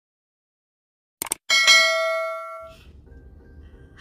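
Two quick mouse-click sound effects, then a bright bell ding that rings and fades over about a second: the click-and-notification-bell sound of a subscribe-button animation.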